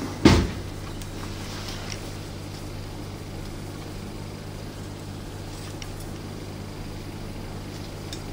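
Scissors trimming a thin carbon-fibre reinforcement strip: a sharp snip a fraction of a second in, then a few faint snips, over a steady low hum.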